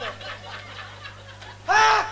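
A man's loud stage laugh through a PA system, bursting out near the end in pitched 'ha-ha' syllables that rise and fall, over a steady low electrical hum.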